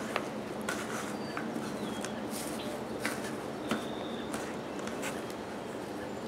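Hands stirring and crumbling moist potting soil in a plastic 5-gallon bucket: soft, irregular rustling and crackling as the soil is broken up and turned.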